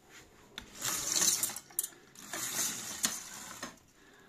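Zebra roller blind being raised by its control chain: the chain and clutch mechanism rattle and click in two long pulls as the fabric winds up into the cassette box.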